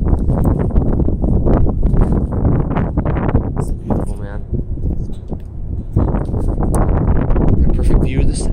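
Footsteps on a steel-grating staircase: a quick, irregular run of knocks and clanks, with a low rumble under them.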